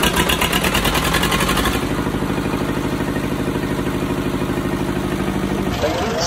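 Air-cooled three-cylinder diesel generator engine running: faster and harsher for about the first two seconds, then settling into a steady, even idle. The sound cuts off abruptly just before the end.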